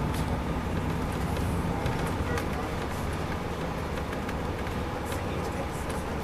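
Cabin sound of a 2002 MCI D4000 coach under way, its Detroit Diesel Series 60 engine running with a steady low rumble under road noise, heard from the middle of the bus. Faint light clicks and rattles come through now and then.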